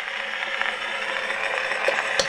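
1899 Edison Concert phonograph running on after the song ends: steady hiss of the reproducer stylus riding the wax cylinder, with the whir of the machine's motor. A sharp click comes near the end.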